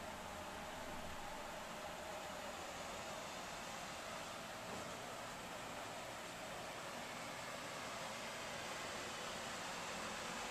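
Steady, even hiss of a room air conditioner running.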